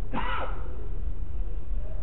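A man's short intake of breath about a fraction of a second in, then a pause over a steady low hum in the recording.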